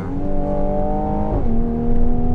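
Mercedes-AMG 43's 3.0-litre twin-turbo V6, heard from inside the cabin, pulling up through the revs under acceleration. About one and a half seconds in, the pitch drops quickly as the nine-speed 9G-Tronic automatic shifts up, then the engine starts climbing again.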